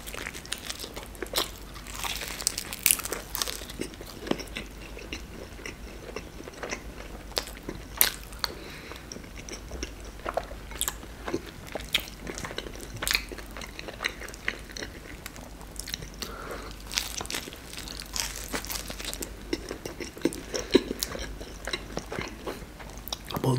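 A man biting into and chewing a deep-fried beef cheburek, its crisp fried crust crunching. Short crunches and clicks come irregularly throughout.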